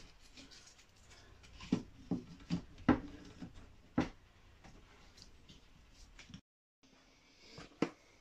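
Dry root-wood branch pieces being set into a glass terrarium of soil by hand: a handful of light wooden knocks and faint rustling in the first half.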